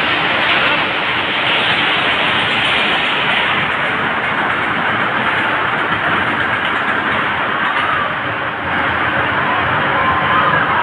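Small steel roller coaster train running along its track close by, a steady rumbling roar of wheels on rails.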